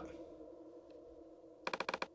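A quick run of about six computer keyboard clicks near the end, over a faint low room hum.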